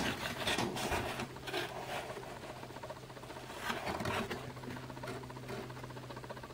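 Scattered light scratching and rustling, heaviest in the first second and a half and again about four seconds in, over a faint steady low hum.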